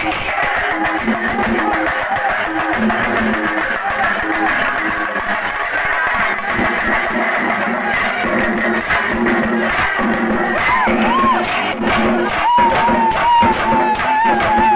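A singarimelam ensemble of chenda drums played loudly in a fast, driving rhythm. The strokes grow sharper in the second half, and a wavering high tone rises over the drumming near the end.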